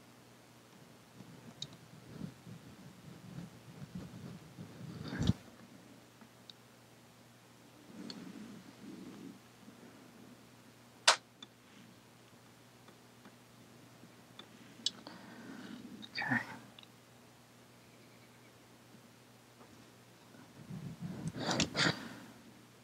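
Quiet room tone broken by scattered soft handling noises and a few sharp clicks, the loudest a single sharp click about eleven seconds in.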